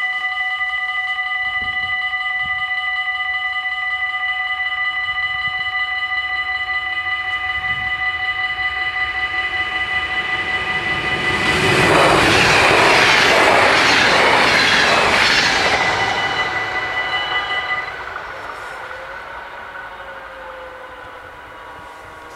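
Level-crossing warning bells ringing steadily. About 11 s in, a VIRM double-deck electric intercity train passes at speed for about five seconds, with a loud rush and a rhythmic clatter of its wheels. The bells stop about 18 s in.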